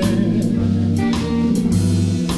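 Live blues band playing a slow jazzy shuffle on electric guitar, electric bass and drum kit, with regular cymbal and snare strokes. This stretch is instrumental, between sung lines.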